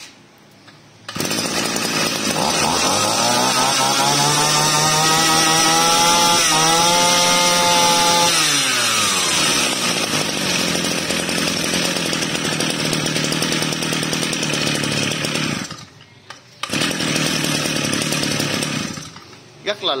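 Shindaiwa S35 top-tank two-stroke brush cutter engine starting about a second in. It revs up over a few seconds, is held at high revs, then drops back to a steady idle. Near the end it cuts out, runs again for about two seconds, and stops.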